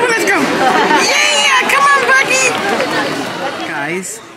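Speech: voices talking and chattering, with no other sound standing out.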